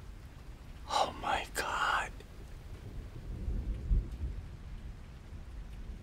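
A low rumbling drone that swells a little over halfway through. About a second in there is a brief breathy, whisper-like vocal sound lasting about a second.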